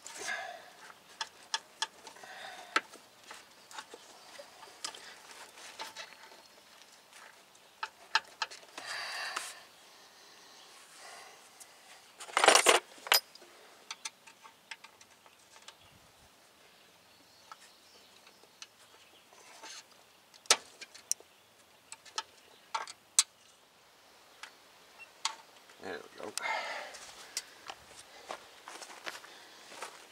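Small metal clicks and clinks of hand tools on steel brake line fittings as a replacement line is fitted at the front wheel, scattered and irregular, with a louder clatter about twelve seconds in.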